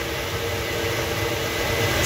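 Flow bench running, its motors pulling air through the number four runner of an Edelbrock Performer intake manifold at about 200 CFM: a steady, even rush of air with a low hum under it.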